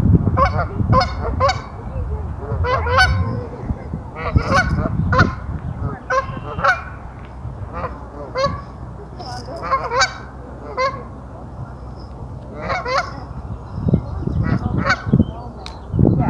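Canada geese honking, short calls in quick runs, thinning out mid-way and picking up again near the end.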